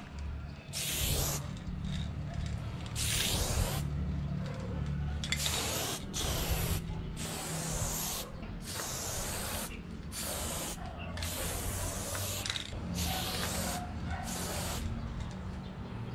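Aerosol spray-paint can hissing in about a dozen short bursts, each a second or less, as silver paint is sprayed in strokes onto a wall. A steady low hum runs underneath.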